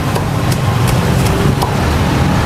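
Cleaver chopping roast pork on a thick round wooden chopping block: about five sharp, evenly spaced chops, roughly three a second, over a steady low rumble.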